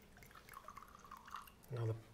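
Red wine being poured from a bottle into a stemmed wine glass: a faint, irregular trickle.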